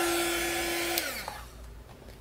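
Small handheld heat gun running with a steady hum and rush of hot air as it shrinks heat-shrink tubing. About a second in it is switched off with a click, and its fan winds down with a falling pitch.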